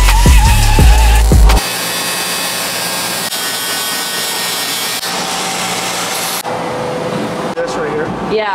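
Background music with a heavy bass beat cuts off about a second and a half in. It gives way to an angle grinder with a flap disc grinding down a weld on a steel truck frame, a steady hiss with a faint whine that runs for about five seconds.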